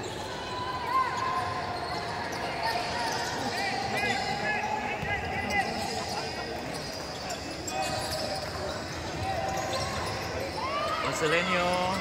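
Basketball being dribbled on a hardwood court during live play, with short sneaker squeaks and a steady murmur of crowd voices echoing in the gym.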